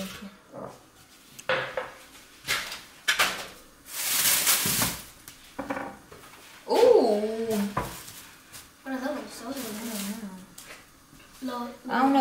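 Kitchen handling sounds: pots, utensils and packaging clattering and rustling in a few short bouts, the longest about a second long. Later come two short stretches of voice without clear words.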